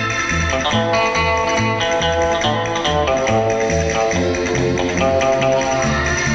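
Background music: a guitar-led instrumental with plucked notes over a steady bass beat.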